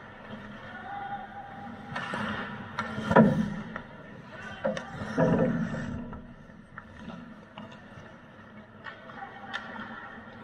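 Ice hockey play on a rink: skate blades scraping the ice and sticks and puck clacking, with the loudest knock about three seconds in and a swell of scraping about five seconds in. Players' voices call out now and then.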